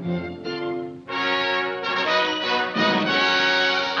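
Orchestra playing a short four-bar vamp, the lead-in to a song. It opens softly with held notes, then loud sustained brass chords come in about a second in.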